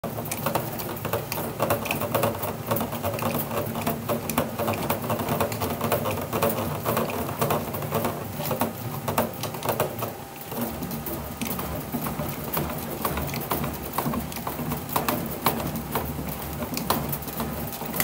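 A 2023 Marucci CATX Composite USSSA bat turning between the rollers of a hand-operated bat-rolling machine: a steady low hum under many small clicks and creaks. The low hum changes about ten seconds in.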